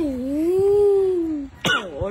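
One long drawn-out vocal cry lasting about a second and a half, its pitch dipping, then rising and slowly falling, as a baby chews on a woman's offered fingers; a short burst of voice follows near the end.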